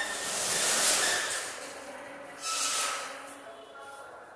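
Chalk scratching across a chalkboard as a word is written: a long spell of scratching, then a second shorter stroke about two and a half seconds in.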